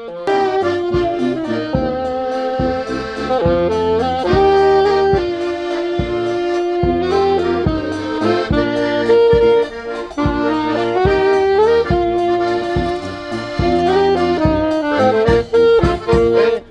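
Band playing a lively instrumental dance tune: a melody line over a steady beat of about two beats a second.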